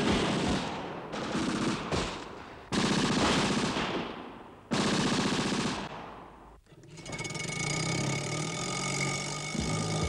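A small car's engine sputtering with a rapid popping rattle. It cuts in suddenly twice, about three and five seconds in, fading after each, then settles into a steadier run.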